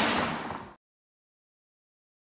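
Outdoor background noise, a steady hiss, that fades and then cuts off abruptly under a second in, leaving dead silence.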